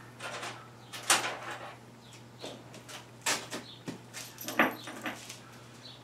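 Faint handling noises: a few irregular clicks and rustles, the sharpest about a second in, as a small metal roofing screw is picked up. A low steady hum sits underneath.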